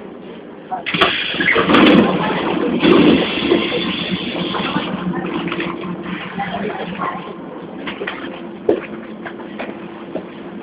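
Inside a Lisbon Metro ML90 car: the train's steady low hum, with a sudden loud rush of noise about a second in that stays strongest for about four seconds and then eases.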